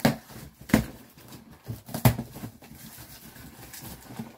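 Cardboard shipping box being worked open by hand: three sharp knocks or cracks, at the start, just under a second in and about two seconds in, with softer cardboard rustling between them.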